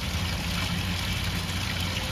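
Water pouring and trickling steadily from a tiered wooden-barrel garden fountain, an even rush with a low rumble beneath it.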